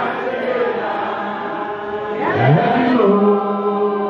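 Congregation singing a slow worship chorus together, a man's voice leading over a microphone on long held notes, with a voice sliding up in pitch about two seconds in.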